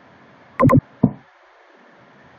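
Computer mouse button clicking: a loud double click (press and release) a little over half a second in, then a single sharper click about a quarter second later.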